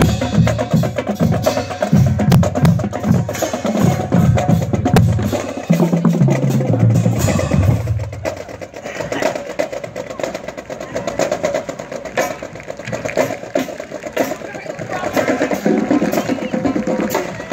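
Marching band drumline playing a cadence as it passes: snare drums, tenor drums and bass drums with dense strokes and low pulses. The drumming fades after about eight seconds, leaving scattered stick clicks and crowd chatter.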